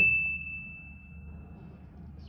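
A single high, pure ding sound effect. It is already ringing at the start and fades away over about two seconds.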